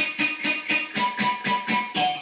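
Electric guitar power chord strummed rapidly and evenly, about six strokes a second, with the pick striking all the strings. The unused strings are muted by the flattened fretting-hand index finger, so only the chord notes ring through the percussive scratch of the muted strings.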